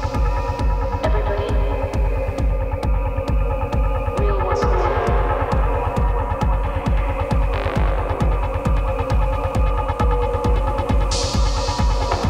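Deep techno DJ mix: an evenly spaced, driving kick drum and bass pulse under held synth tones, with brief swells of hiss about a third of the way in, past halfway, and near the end.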